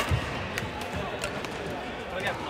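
Badminton hall ambience: a sharp click of a racket striking a shuttlecock right at the start, then a low thump on the wooden court floor. Fainter racket clicks follow, with murmuring players' voices echoing in the hall.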